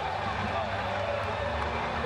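Indistinct men's voices shouting in celebration, with no clear words, over a steady low rumble.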